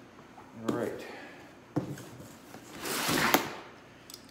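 A brief murmur of voice and a single sharp knock, then a rustle of cloth that swells and fades as a utility knife is drawn out from a pocket, ending in a sharp click.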